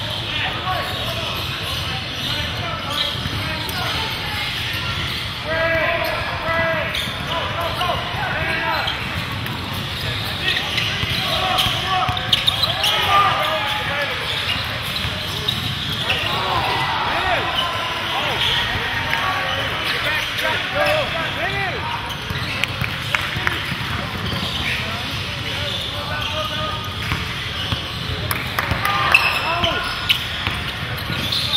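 Basketball being dribbled on a hardwood gym floor during play, with sneakers squeaking in short bursts as players cut and run, and the voices of players and spectators calling out.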